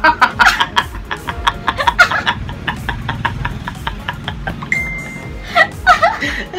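Two people laughing hard, in a fast run of short breathless bursts, about five a second.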